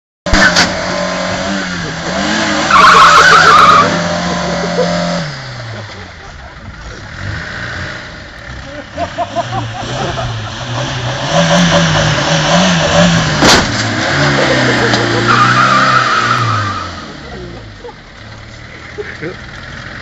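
Kia and Land Rover engines revving hard, rising and falling, with spinning tyres squealing in two bursts, about three seconds in and again around sixteen seconds. About two-thirds of the way through there is a single sharp bang as the cars hit.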